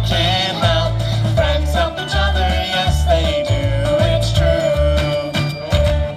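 Upbeat children's sing-along song: voices singing over a bouncy bass line and percussion, ending on one long held sung note near the end.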